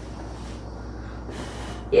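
A girl blowing a long, steady breath at lit birthday candles, a continuous rush of air; the flames are not all out by the end.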